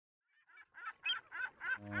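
A rapid series of honking bird calls, about three a second, fading in and growing louder. A steady low drone begins just before the end.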